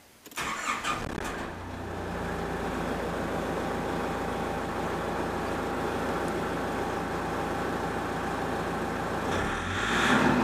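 Nissan ZD30 DI 3.0-litre four-cylinder turbo diesel cranking briefly and catching within about a second, then idling steadily. The engine note swells briefly near the end.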